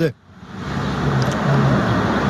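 A motor vehicle driving past on the road: a steady rush of engine and tyre noise that swells over the first second and then holds.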